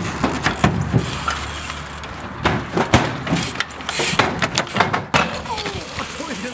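Mountain bike wheels rolling along wooden planks propped on old washing machines and fridges, with a series of sharp knocks and clunks as the tyres hit and shift the boards and appliance casings.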